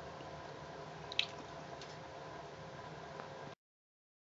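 Homemade rocket stove burning wood: a faint steady hiss with a couple of small crackles, the clearest about a second in. The sound cuts off abruptly to dead silence about three and a half seconds in.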